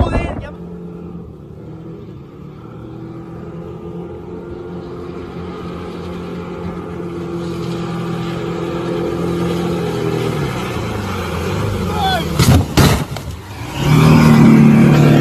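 Motorboat engine running at speed, a steady drone that grows gradually louder, then a short burst of noise with a shout near the end.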